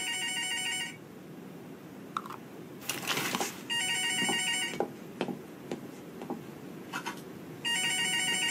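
Telephone ringing three times, each trilling ring about a second long and a few seconds apart, with soft knocks and a brief rustle between rings.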